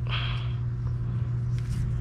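Steady low background hum, with a brief soft hiss near the start.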